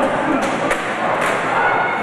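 Three sharp thuds of blows and bodies hitting in a wrestling brawl, over the chatter of a crowd.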